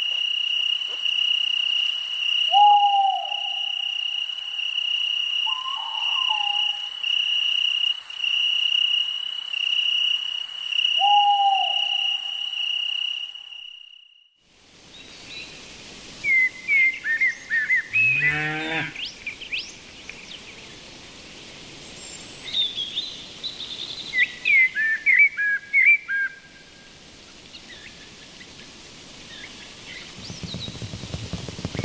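Night insect chorus, a steady pulsing cricket trill, with three short low hooting calls. About halfway through it cuts to a daytime pasture ambience: a cow moos once, and birds chirp in short bursts, loudest a few seconds before the end.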